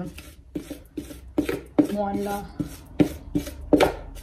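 Spatula scraping thick chocolate brownie batter out of a plastic mixing bowl: about a dozen short scrapes and taps against the bowl's rim and sides, coming irregularly.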